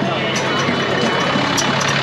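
Busy street-market noise: a vehicle engine idling with a steady low hum, with people's voices mixed in.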